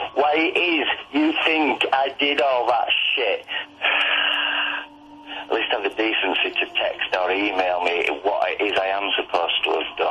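Speech heard through a telephone- or radio-like channel, thin and narrow-sounding, running almost without a break, with a short hissy pause about four seconds in.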